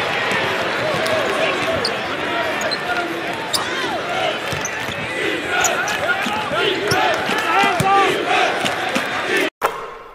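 A crowd of many voices talking and calling at once, with scattered short knocks among them. The sound cuts off near the end.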